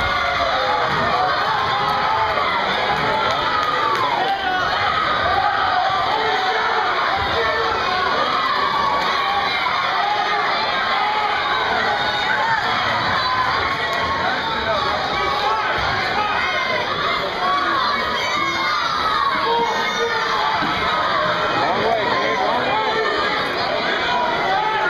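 Spectators, many of them children, shouting and cheering continuously, with many voices overlapping without a break.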